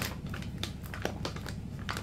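A bag of ground coffee being handled, its packaging crinkling in a few short, separate crackles.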